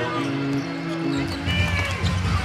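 Arena music from the sound system holding a steady chord over crowd noise, with a basketball being dribbled on the hardwood court.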